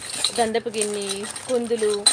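Small metal puja vessels clinking against each other and their plate as a hand moves them about in clear plastic wrapping, with a woman's voice drawing out long sounds over it.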